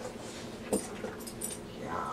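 A dog searching among cardboard boxes: one sharp tap on cardboard partway through, a few faint ticks, and a short high dog whine starting right at the end.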